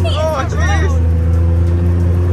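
Engine of an open off-road side-by-side UTV running with a steady low drone as it is driven along.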